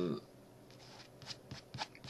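Faint handling of paper: a few quick, short rustles and taps in the second half.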